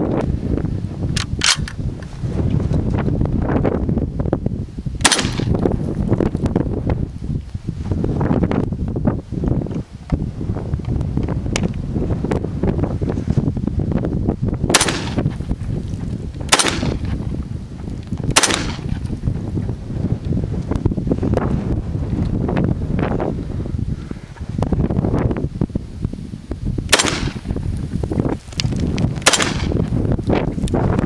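A 5.56 (.223) rifle firing a string of single shots a few seconds apart: a sharp one about five seconds in, three about two seconds apart in the middle, and two close together near the end, with fainter reports between. Wind buffets the microphone throughout with a steady low rumble.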